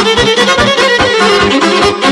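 Instrumental break in Bosnian izvorna folk music: a violin plays a fast melody over a steady, quick rhythmic backing of about four to five beats a second.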